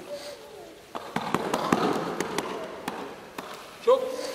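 Two people scuffling on foam floor mats in a grappling move: a quick run of sharp slaps and knocks with rustling of bodies and clothing, starting about a second in and lasting a couple of seconds.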